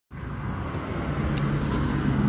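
Steady low hum of a road vehicle's engine, growing slightly louder.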